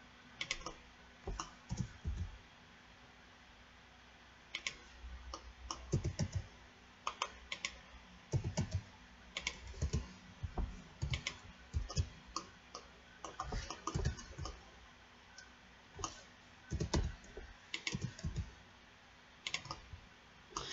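Computer keyboard keys clicking in irregular clusters of keystrokes as shortcuts are pressed, with a pause of about two seconds near the start.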